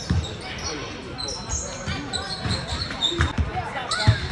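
A basketball being dribbled on an indoor court, thumping repeatedly at an uneven pace, with indistinct voices in the hall.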